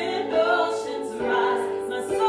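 Three women singing a worship song in harmony, with electric keyboard accompaniment.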